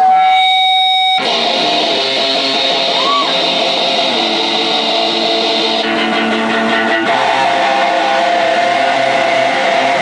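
Live electric guitar played through an amplifier: one held note, then about a second in a full, dense guitar part starts suddenly and rings on as a song begins.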